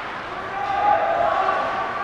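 A single voice shouting one drawn-out call over the steady background noise of an ice hockey rink, loudest about a second in.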